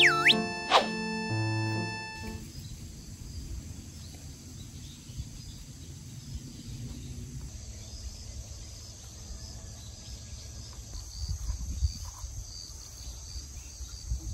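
Background music with a swooping sound effect for about the first two seconds, which stops abruptly. Then an outdoor ambience of insects droning steadily, with low rustling and a few soft knocks near the end.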